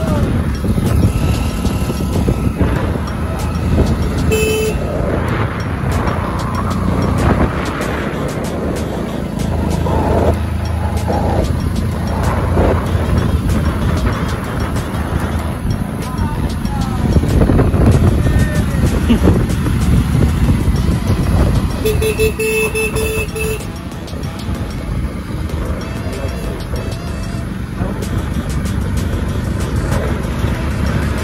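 Motorcycle riding along a highway, its engine and road noise buried in loud, constant wind rush on the microphone. A vehicle horn honks briefly about four seconds in, then again for about a second and a half past the twenty-second mark.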